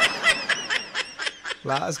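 A person laughing in a run of quick breathy snickers, with a voice starting near the end.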